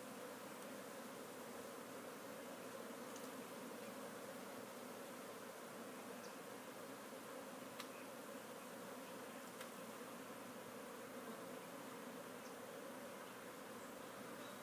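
Swarm of honeybees from an opened colony buzzing as a low, steady, even hum while their brood comb is being cut out and fitted into frames, with a couple of faint ticks about halfway through.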